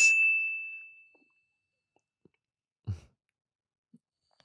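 A single bright ding: one high tone that rings out and fades away over about a second. A short, soft low thump follows near the end.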